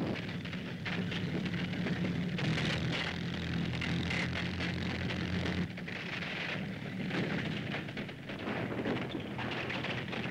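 Medium tanks running: a steady low engine drone under a rough, crackling rush of noise, the drone fading about six seconds in while the rushing noise goes on.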